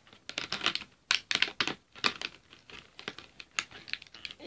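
Irregular quick clicks and rattles of small hard plastic art-set pieces and packaging being handled.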